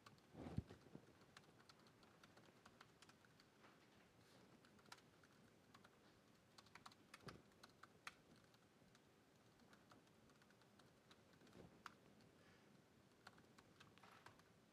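Faint typing on a MacBook Pro laptop keyboard: irregular key clicks as commands are entered, with a thump about half a second in.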